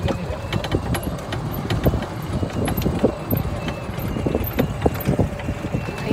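Golf cart riding along a course path: irregular knocks and rattles over a steady low wind rumble on the microphone.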